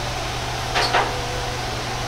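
Steady fan-like whoosh of kitchen equipment with a low hum running under it, and a brief noisy burst just before a second in.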